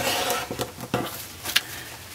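Rotary cutter slicing through cotton fabric against an acrylic ruler on a cutting mat: a short hiss in the first half second, followed by a few light clicks as the ruler and cutter are handled.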